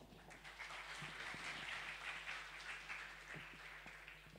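Faint audience applause, many hands clapping, that builds over the first second and tapers off near the end.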